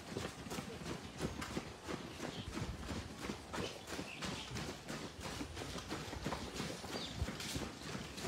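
Footfalls of a group of runners jogging on an asphalt road: many running shoes striking the pavement, overlapping in an uneven rhythm.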